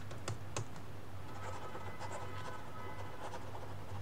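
A stylus writing on a tablet surface: sparse faint clicks and taps of the nib as a line of handwriting is written, over a low steady hum.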